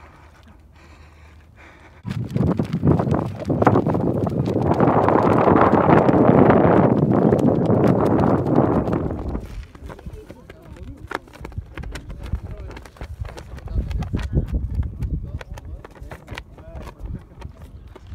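Wind gusting across the microphone: a loud rush from about two seconds in, easing after about nine seconds into quieter gusts with irregular taps and flapping.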